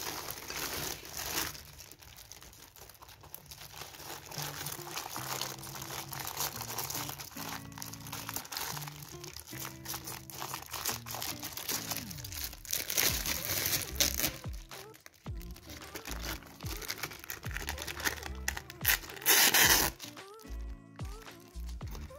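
Plastic wrap crinkling and rustling as a sheet of fruit leather is handled and pulled from its plastic, with a louder burst of crinkling near the end, over background music.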